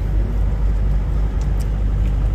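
Steady low rumble of engine and road noise inside the cabin of a moving SUV.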